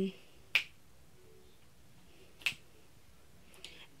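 Two sharp finger snaps about two seconds apart, with a faint short hum between them and two softer snaps or clicks near the end.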